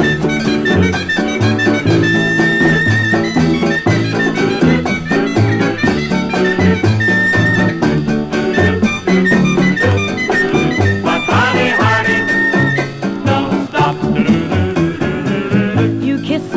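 Instrumental break of a 1958 swing-style pop song, the band playing without vocals, reproduced from a 78 rpm record on a turntable.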